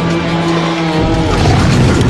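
Film soundtrack: a steady, held low horn-like chord that stops about a second in and gives way to a loud, rumbling mix of noise with many sharp hits, the clamour of a battle scene.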